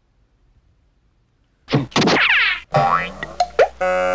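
Near silence for the first second and a half, then a springy cartoon 'boing' sound effect with sweeping, wobbling pitch, followed near the end by steady musical tones.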